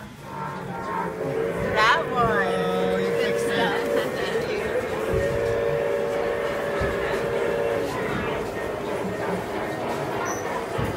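A model diesel locomotive's sound unit sounding its horn, set off from the handheld controller: two long, steady blasts of a chord, the first starting about half a second in and the second about five seconds in.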